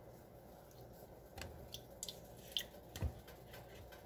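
Faint clicks and taps of a plastic sour cream tub being handled at a glass blender jar, with a soft knock about three seconds in.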